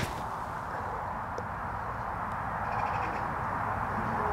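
Steady low background noise after a golf shot, with a faint high-pitched call a little under three seconds in.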